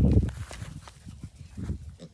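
A Jersey calf close to the microphone: a short, low huff of breath at the start, then soft thuds of its hooves on dry grass.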